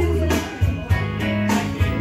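Karaoke backing track with guitar, bass and a steady beat playing over the room's speakers, with no singing over it.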